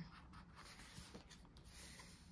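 Faint rustle of a photobook's paper page being turned and smoothed down by hand.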